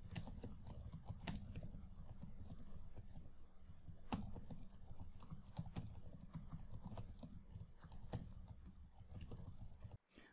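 Computer keyboard typing: a faint, irregular run of quick key clicks over a low steady hum.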